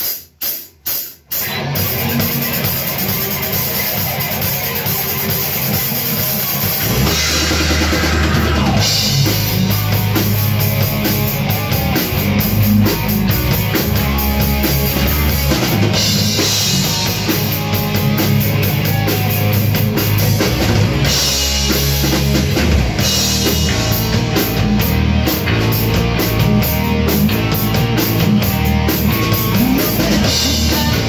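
A rock band playing live in a small room: four quick clicks as a count-in, then the instrumental opening of the song on drum kit, bass and electric guitars. The sound gets fuller and heavier in the low end about seven seconds in.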